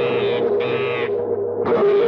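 Film background music with a steady held drone, over which a caged rose-ringed parakeet gives two short screeches in the first second as it flaps in its wire cage.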